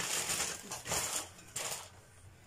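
Dry pasta rustling and rattling as it is poured into a pot, in a few uneven surges with light clicks, dying away near the end.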